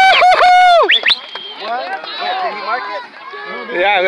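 A man's loud, drawn-out celebratory shouts after a soccer goal, cutting off about a second in, followed by quieter overlapping shouts and calls from several people on the field.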